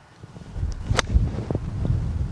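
A golf club, a wedge, strikes the ball once with a single sharp click about a second in. A low wind rumble on the microphone rises about half a second in and stays heavy.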